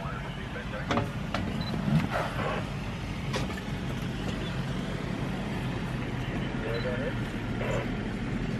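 Safari vehicle's engine running low and steady, with a few sharp knocks in the first three and a half seconds.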